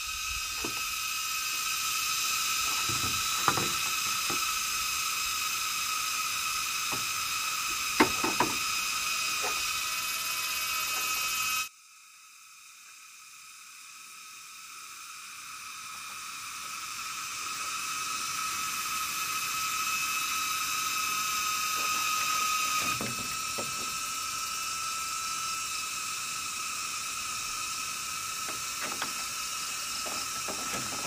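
Steady high-pitched insect chorus, several shrill tones held level, with a few sharp knocks of split bamboo being handled in the first eight seconds. The sound drops out abruptly about twelve seconds in and fades back up over the next several seconds.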